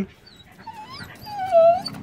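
A dog whining: a few short, high whimpers, then one longer whine about a second and a half in.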